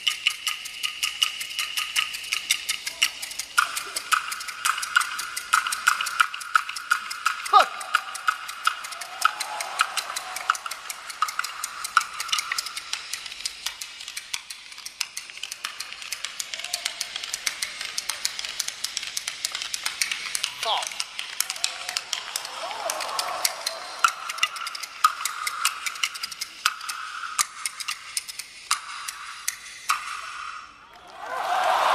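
Kuaiban bamboo clappers, a large two-piece clapper and the small seven-piece clapper, played solo in a fast, unbroken run of dry wooden clacks.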